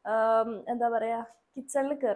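Speech only: a woman talking, with short pauses between phrases.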